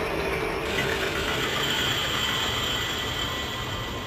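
Intro of a dark psytrance track: a dense, noisy electronic texture with thin high squealing tones held steady over it, growing brighter in the top end just under a second in.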